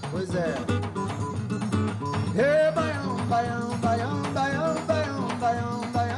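Acoustic guitar (violão) strummed in a quick, syncopated forró rhythm, with a voice singing a melody over it.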